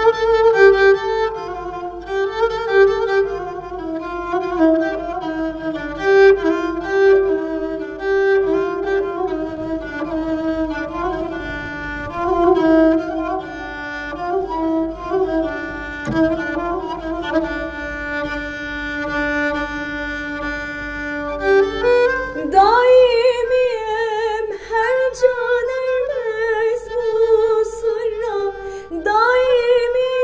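Kabak kemane, a gourd-bodied bowed spike fiddle, playing a solo melody of a Turkish folk song (türkü), ending on a long held note. About three-quarters of the way through, a woman's singing voice comes back in with vibrato over the fiddle.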